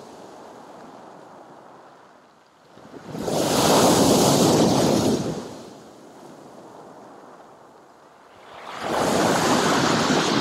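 Sea waves breaking on a pebble beach and against a concrete pier footing: a low wash, then a big wave crashing about three seconds in, and another building near the end.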